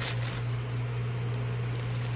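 A steady low hum under faint room noise, with one short click at the very start.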